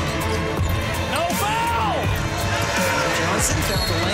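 Basketball game sound on a hardwood court: sneakers squeaking in short rising-and-falling chirps, with the ball bouncing, over background music.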